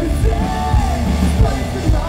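A live rock band playing loud through the hall's PA: electric bass, guitars and drums, with a male lead singer belting a line that rises and falls in pitch.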